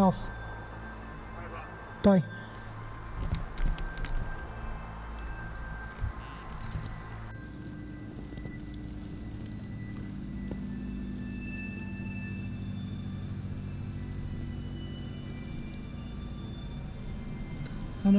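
Low, sustained eerie background music drone that sets in about seven seconds in and holds steady, after a stretch of faint handling and rustling noise.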